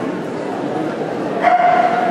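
An Afghan hound gives one short, high whine, level in pitch, about one and a half seconds in, over the chatter of a crowd in a large hall.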